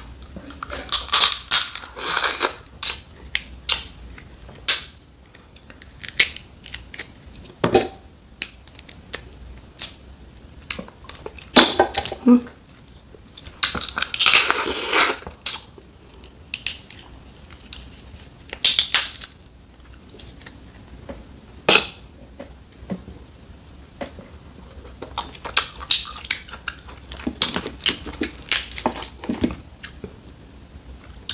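Boiled snow crab leg shells cracked and pulled apart by hand: scattered sharp snaps with a few longer spells of crunching and rustling, the loudest about a second in and around fourteen seconds.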